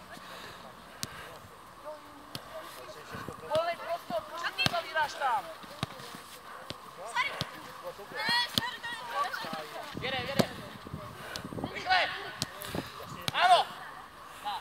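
Players' shouts and calls across a football pitch, several short high-pitched cries with the loudest near the end, mixed with the sharp knocks of a football being kicked.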